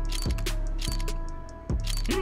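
Case-opening roulette spin sound effect: a run of sharp ticks that slow down as the spinning item reels come to a stop, over background music.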